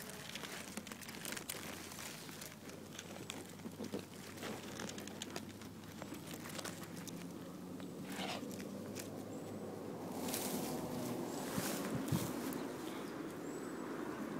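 Irregular crackling and rustling of dry grass stems and handling noise close to the microphone, over a faint steady low hum.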